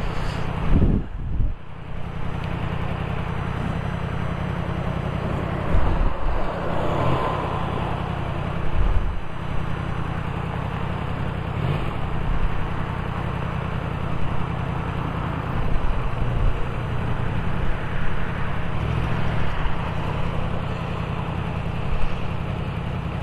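Wind rushing over the microphone and road noise from a motorcycle riding through town, with its engine running underneath.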